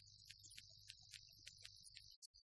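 Near silence: a faint low hum and a thin high hiss, with soft ticks about four times a second.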